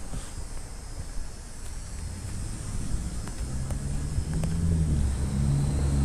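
Car engine running close by, a low hum that builds from about two seconds in and grows louder through the second half.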